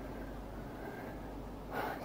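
A pause in speech with faint steady room hiss, then a woman's audible breath in near the end, just before she speaks again.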